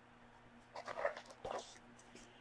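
Pages of a hardcover picture book being turned: two short, faint paper rustles about a second in, over a faint steady hum.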